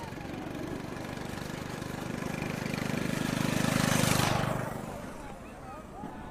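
A motor vehicle driving past close by. Its engine and tyre noise swell to a peak about four seconds in, then fade away.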